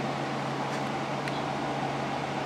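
Steady hum of a running machine, a low constant tone under a faint hiss.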